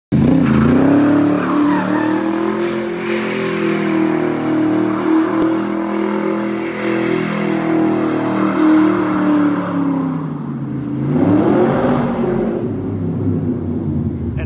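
Shelby Cobra's V8 engine held at high revs with tyre squeal as the rear tyres spin in a smoky burnout. About ten seconds in the revs drop, flare up once more and fall away.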